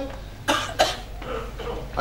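A man coughing twice in quick succession, about half a second in.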